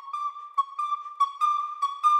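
Solo recorder playing a fast passage of short, separated notes that move in small steps within a narrow high range.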